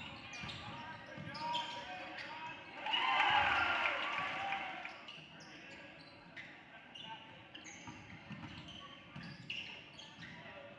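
Basketball game in a gym: voices of players and spectators throughout, swelling into louder shouting from the crowd about three seconds in, with a basketball bouncing on the hardwood floor and short knocks later on.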